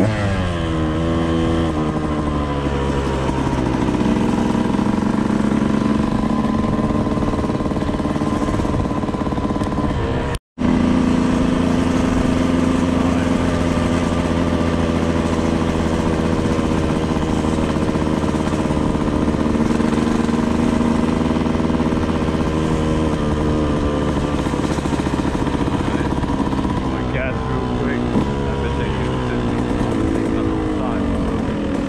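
Dirt bike engine running under the rider at a steady cruising speed. The note drops as the bike slows at the start and again near the end, and the sound cuts out for an instant about ten seconds in.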